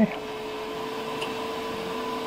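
Elegoo Mars resin 3D printer running mid-print: a steady hum with a clear, unchanging whine over it.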